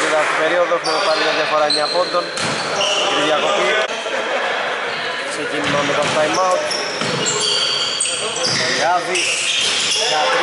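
Basketball game on a wooden indoor court: a ball bouncing, short high sneaker squeaks on the floor, and players' voices calling out now and then, all echoing in a large hall.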